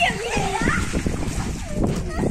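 Water from a garden hose spraying and splashing on concrete, with children's voices calling out over it in the first second.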